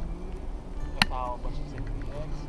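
A single sharp click about halfway through, followed at once by a brief voice, over a steady low background.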